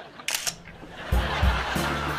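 A camera shutter clicks once, then background music with a heavy, regular bass beat starts about a second later.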